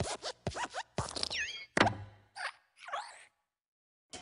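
Animated Luxo Jr. desk lamp hopping in the Pixar logo: quick squeaky creaks of its spring-jointed arm, with small landing thumps. The loudest thump comes about two seconds in, as it squashes the letter I.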